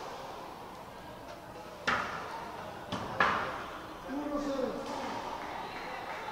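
A racquetball being struck and hitting the court walls: a sharp crack about two seconds in and a louder one a little over a second later, ringing in the enclosed court. Faint voices follow.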